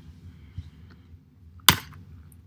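Faint rustle of a hand rubbing a dog's fur, then a single sharp click about one and a half seconds in.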